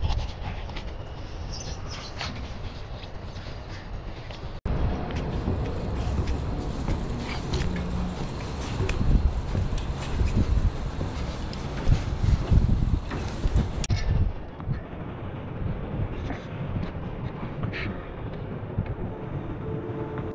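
Rustling and bumping of clothing against a body-worn camera's microphone during a climb, over an uneven low rumble with scattered knocks. The sound cuts out abruptly about four and a half seconds in, then picks up again.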